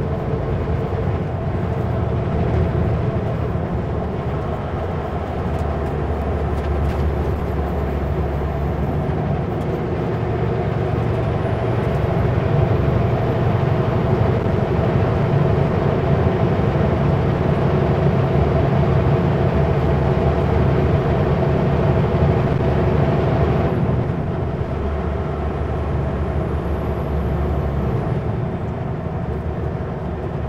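Kenworth W900L semi-truck's diesel engine running as the truck drives along the highway: a steady rumble with road noise. A faint high whistle rises and holds for long stretches, then cuts off with a slight drop in the sound about three quarters of the way through.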